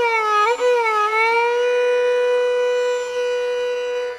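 Carnatic violin playing a gliding, ornamented phrase that settles about a second in onto one long held note.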